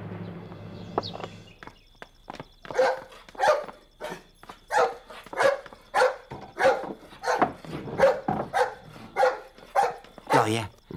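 A dog barking over and over, a short bark roughly every half second to second, after the drama's music fades out in the first second or so.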